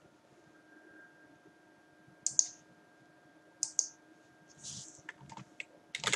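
Computer mouse and keyboard clicks: two sharp double clicks a little over a second apart, then a run of lighter, scattered clicks near the end, over a faint steady hum.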